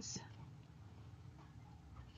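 The last sound of a spoken word fades out, then near silence: faint room tone with a low hum.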